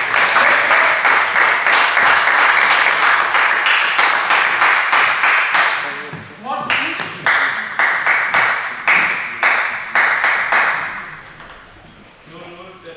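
Hand clapping and cheering from team-mates and spectators in a sports hall, celebrating a won table tennis point. It breaks briefly about halfway, with a single shout, then picks up again and fades out near the end.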